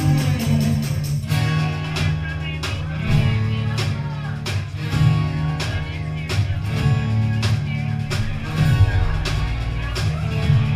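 A live band playing a song on acoustic and electric guitars, bass and drum kit, with a steady drum beat.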